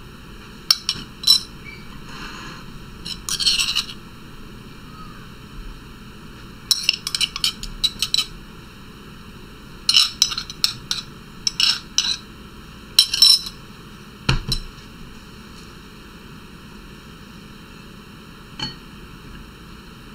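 Metal spoon clinking and scraping against a glass dish and a bowl as an oil-and-herb mixture is spooned out, in several short bursts of sharp clinks with pauses between. One duller thump comes a little past the middle.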